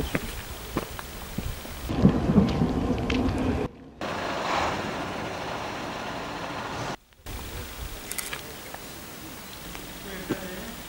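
Outdoor ambient noise, a steady rumbling hiss. It changes abruptly several times as the shots cut, with a brief dropout about seven seconds in.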